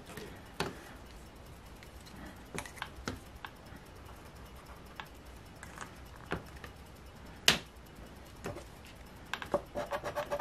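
Scattered light clicks and taps of a felt-tip marker and a plastic scratcher coin being handled on a scratch-off lottery ticket, the sharpest click about seven and a half seconds in. Near the end the coin starts scratching the ticket again in quick strokes.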